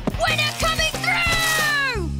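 A cartoon character's wordless vocal cry over background music, its pitch falling away over the last second.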